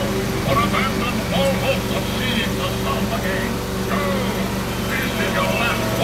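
Steady low drone of a ride train's engine running, with indistinct voices of people talking over it.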